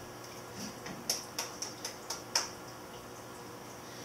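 About six light, sharp clicks, starting about a second in and spread over just over a second, over a faint steady room hum.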